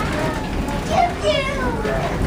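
Children's high-pitched voices and chatter inside a railway passenger coach, over a steady low rumble from the train.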